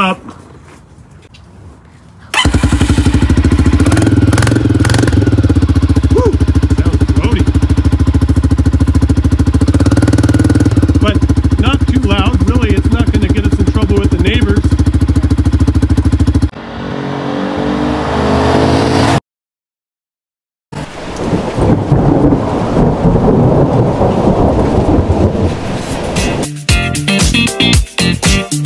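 Can-Am DS 250 quad's single-cylinder four-stroke engine started about two seconds in and running loud and steady through its muffler with the baffle removed. After a cut, a stretch of rushing noise is followed by music starting near the end.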